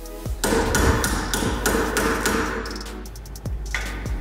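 A rapid run of hammer blows on metal lasting about three seconds, knocking the dust cap off a car's rear wheel hub with a screwdriver. Background music plays underneath.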